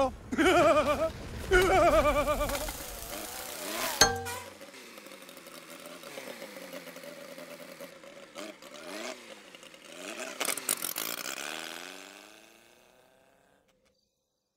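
Cartoon buzzing of small winged bug-cars flying like flies, a steady buzz whose pitch rises and falls several times as they pass, fading out near the end. A sharp click comes about four seconds in, just before the buzzing starts.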